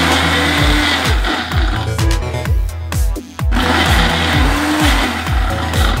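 Nutri Ninja Auto-iQ blender motor running under a load of milkshake on a timed program, with a brief pause a little past three seconds in before it starts again. Background music with deep bass kick drums plays underneath.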